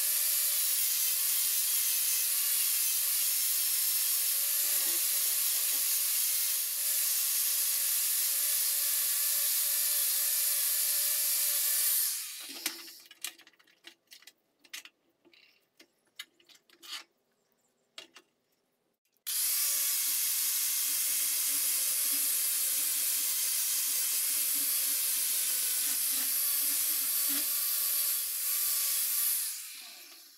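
Angle grinder with an abrasive disc grinding a steel bayonet blade, running steadily with a constant whine, then spinning down about 12 seconds in. Scattered clanks and clicks follow as the blade is handled on the bench. The grinder then runs again for about ten seconds and spins down near the end.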